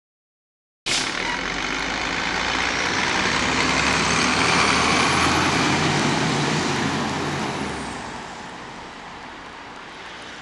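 Silence for about the first second, then a Gillig Phantom diesel transit bus's engine and road noise cut in suddenly. The rumble builds to its loudest around the middle and fades over the last couple of seconds.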